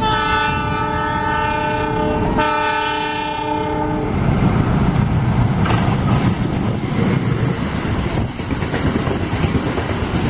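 Diesel locomotive's air horn sounding two long chord blasts, the first breaking off about two seconds in and the second stopping about four seconds in. Then comes the rumble and wheel clatter of passenger carriages passing close by.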